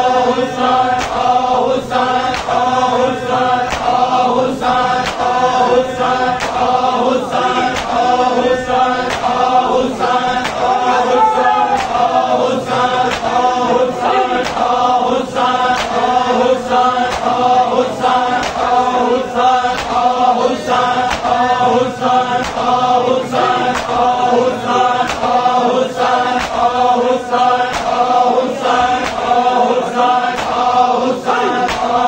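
A group of men chanting a Punjabi noha together, with the sharp slaps of open hands striking bare chests in matam keeping a steady beat under the chant.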